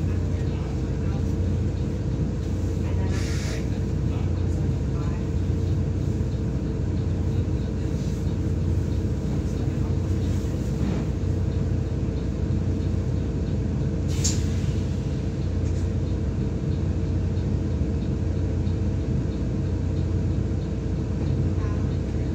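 Inside a stationary single-decker bus, its diesel engine idling with a steady low hum and a steady whine. A brief hiss comes about three seconds in, and a short sharp sound about fourteen seconds in.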